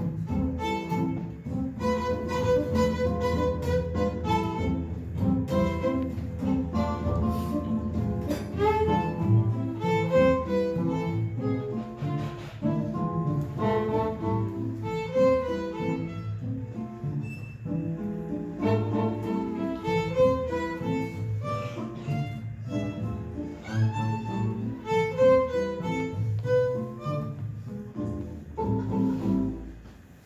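A live trio plays: bowed violin over acoustic guitar and upright double bass. The piece comes to its close about a second before the end, the sound dying away.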